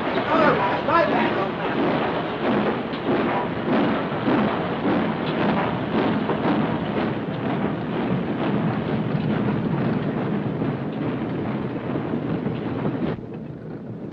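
A moving train's running noise, a steady dense rumble that drops off sharply near the end.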